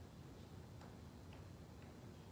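Near silence: quiet church room tone with three or four faint ticks about a second apart.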